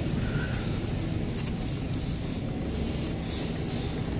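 Jeep driving over a rough dirt trail: a steady low rumble of engine and tyres. Bursts of scraping hiss come about halfway through and again near the end.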